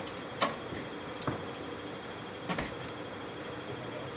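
A few sharp clicks and knocks from a push-bar exit door being handled and pushed shut. The sharpest click comes about half a second in, and a heavier thud about two and a half seconds in as the door closes.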